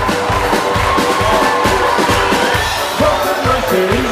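Live band playing an instrumental passage with a steady drum beat, about two beats a second.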